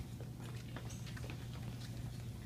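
Children's shoes shuffling and tapping on a hard floor as they dance in a circle, a scatter of short irregular steps over a steady low hum.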